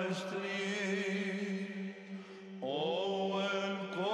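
Monastic choir singing Byzantine chant. A steady low drone note is held under a melodic vocal line. The melody pauses briefly about halfway through and comes back with a rising phrase.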